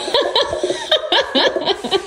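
Laughter: a run of short, quick bursts of giggling, about four or five a second.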